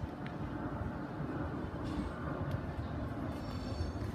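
Low, steady rumble of a passing train, growing slightly louder.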